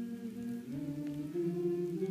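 Voices singing a slow tune unaccompanied, in long held notes that step to a new pitch about once or twice.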